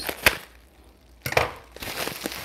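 Scissors snipping through plastic bubble-wrap packaging with one sharp snip near the start, then the plastic wrap crinkling and rustling as it is pulled open from a little past halfway.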